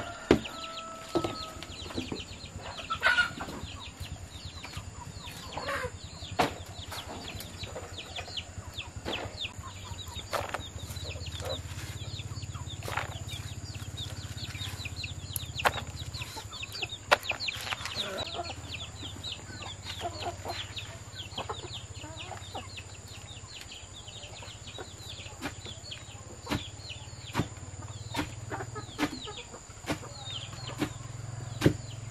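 A long wooden pestle thudding into a wooden mortar, pounding chopped banana stem, in irregular heavy strokes a few seconds apart. Chickens cluck throughout, with a short call near the start.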